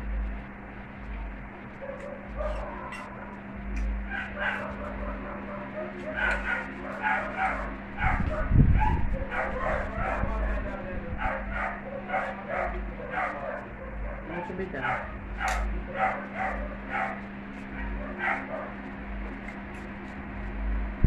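A dog whining and yipping in many short bursts, with a metal fork clinking on a plate and a steady low hum underneath.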